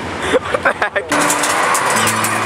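Short bursts of voices, then about a second in an abrupt switch to the loud, busy din of an amusement arcade, with steady electronic hums from the game machines under it.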